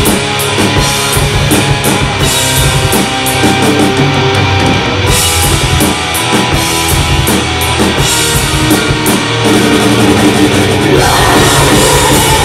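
Thrash metal band playing live: distorted electric guitars and bass over fast drumming on a drum kit.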